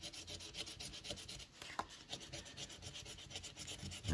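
A coin scratching the coating off a paper lottery scratch-off ticket in quick, faint back-and-forth strokes, about ten a second.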